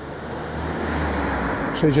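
A car driving past on the street, its tyre and engine noise swelling to a peak about a second in and fading away.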